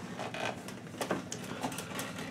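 Steel folding chair being handled and unfolded, its metal frame giving a series of light clicks and knocks.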